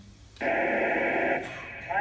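Hiss of an amateur FM radio receiver, starting suddenly about half a second in as the Space Station's downlink signal opens. It is loud for about a second, then lower, just before the reply comes through.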